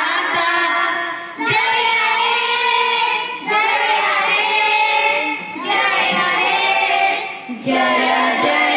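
A group of children singing together, in sung phrases of about two seconds each with short breaks between them.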